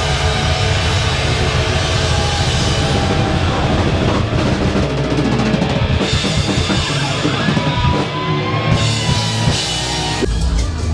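Live heavy metal band playing loud, the drum kit to the fore, with a held high note that bends slightly near the end.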